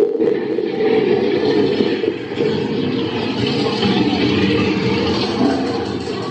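Dark-ride car rolling along its track with a steady rumble, under the attraction's soundtrack and effects, with a sharp knock right at the start.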